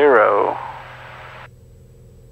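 The end of a spoken word, then the steady drone of a turbocharged Cessna 206 Stationair's engine and propeller in the climb, heard through the headset intercom. About one and a half seconds in, the intercom's upper range cuts off suddenly, as if the squelch closes, leaving only a lower hum.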